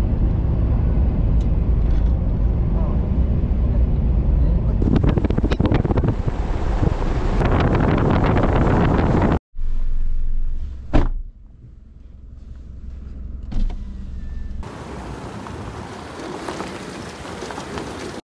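A pickup truck driving on a gravel road: a steady low rumble of engine and tyres with a crackle of gravel, through the first nine seconds. After a sudden cut it runs on from inside the cab, with one sharp knock about eleven seconds in, quieter after that, and a broad hiss near the end.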